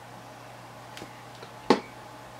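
A low steady hum with a faint click about halfway through and one sharp tap near the end, from picking up and handling a bottle of liquid soldering flux on the workbench.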